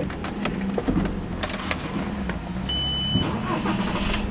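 Car ignition being switched on in an Audi A4's cabin: key and handling clicks over a low steady hum, with a single short high-pitched dashboard beep about three-quarters of the way through.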